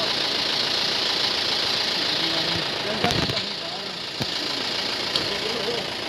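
Vehicle engines idling in a stopped convoy under a steady high hiss, with indistinct distant voices. Two sharp knocks come about three and four seconds in.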